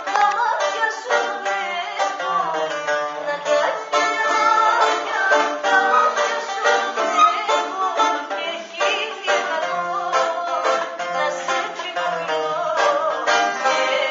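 A woman singing, accompanied by a bouzouki whose strings are picked in a steady stream of quick notes.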